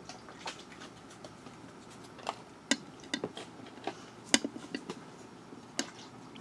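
Handling noise: about a dozen light, irregular clicks and taps, most of them in the second half, over faint room tone.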